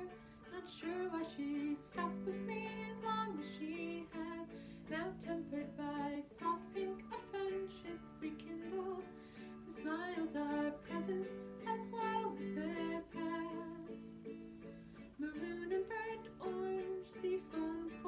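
A woman singing a slow, gentle song to her own ukulele accompaniment, the chords changing every couple of seconds under the sung melody.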